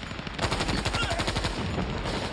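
Light machine gun firing a long, rapid burst of automatic fire, picking up about half a second in after a brief lull.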